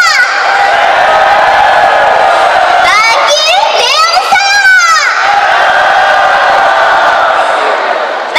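Audience cheering and shouting steadily, with a few loud drawn-out voiced calls rising and falling in pitch about three to five seconds in.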